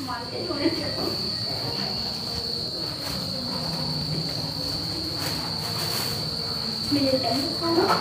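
Crickets chirring steadily at night in a single high, unbroken tone, over a low background murmur.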